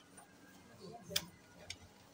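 A quiet pause with faint room noise, broken by one sharp click a little over a second in and a fainter click near the end.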